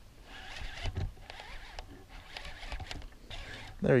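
Faint spinning-reel and rod handling noise with scattered small clicks while a hooked pike is played on the line.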